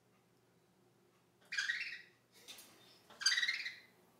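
African grey parrot giving two loud, harsh squawks about a second and a half apart, with a fainter call between them: its imitation of fighting budgies.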